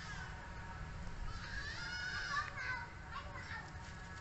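Baby macaque giving a few high, wavering squeaky calls, the clearest about a second and a half in, over a steady low background rumble.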